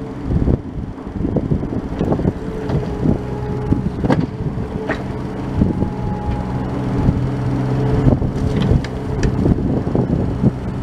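Bobcat E32 mini excavator's diesel engine running steadily under load as its bucket pushes and drags dirt, with a few sharp knocks scattered through.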